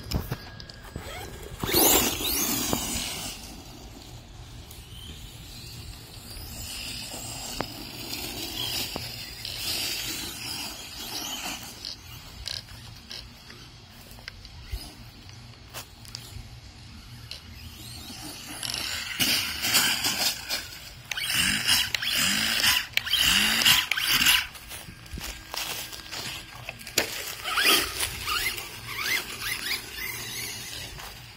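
Electric motor of a radio-controlled monster truck whining in bursts as it speeds up and slows, the pitch rising and falling with each run. The loudest runs come near the start and again in the last third, with a quieter stretch between.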